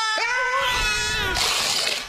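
A man screaming in one long, high-pitched shriek, broken briefly by a catch of breath just after the start. About a second and a half in, the shriek gives way to a burst of rushing noise.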